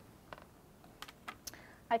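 A handful of light clicks and taps as a canvas board is set down on a wooden tabletop and a plastic cup of paint pens is picked up and moved, the pens knocking against each other.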